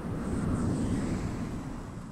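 A low rush of moving air on the microphone, swelling just after the start and fading away toward the end.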